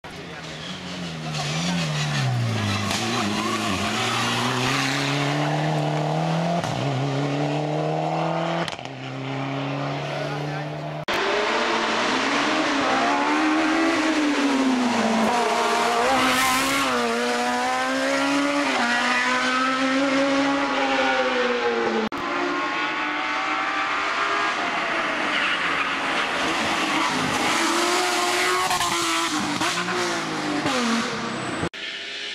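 Hill-climb race car engines revving up and down through corners, the pitch falling on braking and downshifts and climbing again under acceleration, in several short clips cut together with sudden changes about nine, eleven and twenty-two seconds in.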